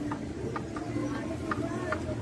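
Faint distant voices calling over a steady low outdoor hum.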